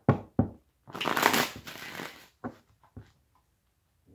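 Deck of tarot cards riffle-shuffled on a table: a couple of sharp taps, then a quick rippling riffle lasting about a second and a half, followed by a few light taps as the deck is squared.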